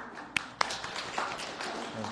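Scattered hand claps from a small audience, starting with two sharp claps close together about half a second in, then lighter, irregular claps.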